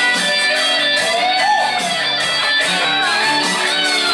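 Guitar music playing steadily.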